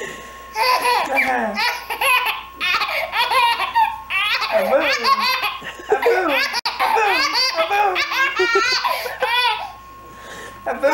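A baby laughing hard in repeated high-pitched belly-laugh bouts with short breaths between them.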